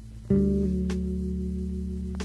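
Band music without vocals: a chord on guitar and bass struck about a third of a second in and left ringing, with a faint tick about every second and a quarter.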